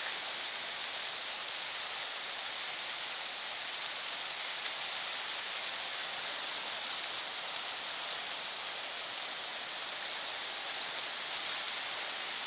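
Muddy floodwater rushing across a road in a steady, even roar.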